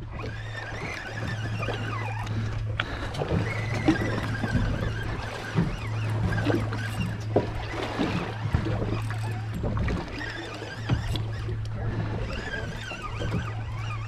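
Steady low hum of a boat's outboard motor under way, with water noise and scattered short knocks.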